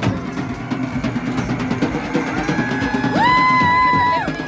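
Marching drumline playing snare and bass drums. About three seconds in, a long steady whistle blast, held at one pitch, becomes the loudest sound, with a fainter held tone just before it.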